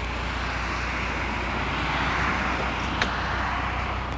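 A car passing on the road, its tyre and road noise swelling to a peak about halfway through and easing off, over a steady low rumble; a single light click near the end.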